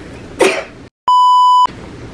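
A short cough about half a second in. The sound then cuts to dead silence and a loud, steady, single-pitched censor bleep plays for about half a second.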